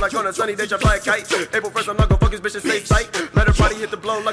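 Hip hop song: rapped vocals over a beat with deep, punchy bass-drum hits.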